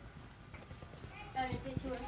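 Faint voices in the background, joined about a second and a half in by a quick run of light clicks and taps.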